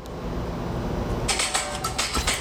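An earbud pressed and rubbed against a clip-on lapel microphone: low rumbling handling noise. From just over a second in, scratchy clicks join it. No music comes through, because the AirPod has disconnected.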